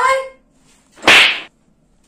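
A single short swish of unpitched noise about a second in, lasting about half a second.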